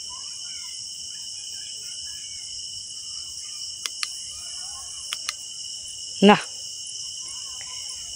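Steady nighttime chorus of crickets, a continuous high-pitched trill that never lets up. A few small, sharp clicks come near the middle.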